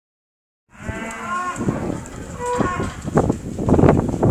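Dairy cows mooing in a barn, several held calls overlapping, starting just under a second in. Knocks and clatter grow louder over the last second.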